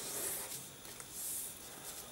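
Faint rustling of a sheet of paper as fingers slide over it and press an origami fold flat, with two soft swishes, one at the start and one just past the middle.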